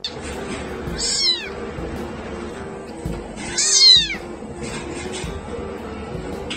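A very young kitten meowing twice: short, high calls that fall in pitch, one about a second in and a louder, longer one near four seconds.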